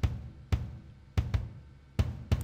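Sampled kick drum (the Big Mono kit from Analog Drums, played in Kontakt 5) fired by MIDI notes taken from a drummer's kick-trigger track. It plays a few separate decaying kick hits: one about half a second in and a quick pair just after a second.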